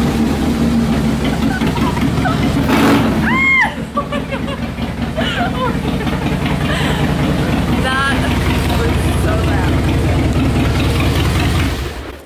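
Cruiser motorcycle engine running loud in a garage just after being started, with a deep steady rumble. It is a little louder over the first few seconds, then settles to a steady idle.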